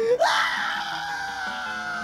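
A cartoon character's long, high scream: it leaps up in pitch, then is held for about two seconds, sagging slightly, over background music.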